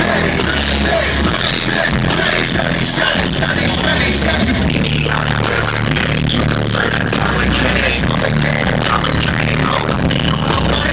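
Loud live hip-hop music from a concert sound system, with a heavy, steady bass line, recorded on a phone from inside the crowd.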